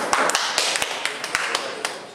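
A few people clapping, quick irregular claps, applauding the black ball being potted to end the pool frame.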